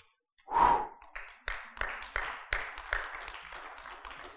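A man's heavy sigh, a loud breathy exhale about half a second in, followed by a few seconds of softer, irregular breathy sounds.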